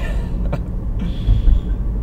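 Car driving over broken, pothole-patched pavement, heard from inside: a steady low road rumble with a couple of brief knocks from the wheels hitting the rough patches.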